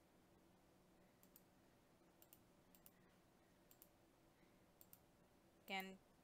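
Near silence with a few faint computer mouse clicks, mostly in quick press-and-release pairs, scattered through a low steady room hum.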